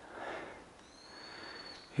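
A hiker breathing hard, faintly, while walking uphill. A thin, steady high whistle sounds for about a second in the middle.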